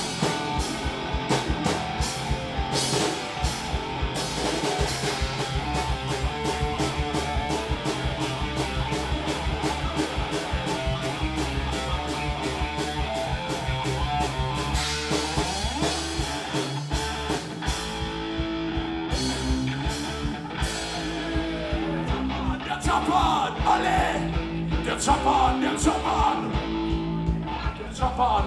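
Punk rock band playing live: electric guitar, bass guitar and drums at a fast beat, the drums and bass briefly dropping out about two-thirds through before the band comes back in.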